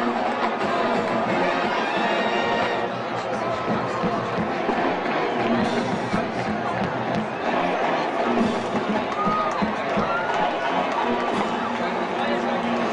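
College marching band playing in the stadium stands, horns and drums over a noisy crowd with some cheering.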